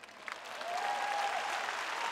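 Large audience applauding, the clapping swelling over the first half second and then holding steady.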